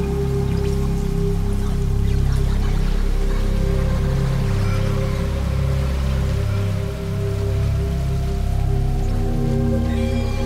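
Ambient Eurorack modular synthesizer music: a sustained wavetable pad over a low bass line whose notes shift about every second. From about two seconds in, a thin siren-like tone glides slowly and steadily upward, made by a slow LFO sweeping the pitch of a Panharmonium resynthesizer.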